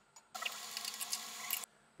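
Brass sight-glass nut on a boiler water column being loosened: a steady rasping squeak lasting about a second, starting and stopping abruptly.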